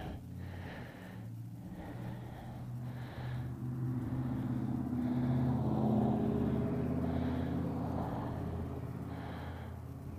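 A pickup truck driving past, its engine hum growing louder to a peak about six seconds in, then fading away.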